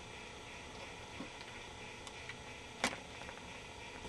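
Quiet room tone with a faint steady hiss, broken by a single sharp click about three seconds in and a fainter tick about a second in.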